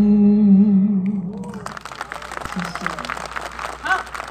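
Unaccompanied singing that holds one long, steady final note and stops about a second and a half in. Scattered clapping and voices from the audience follow.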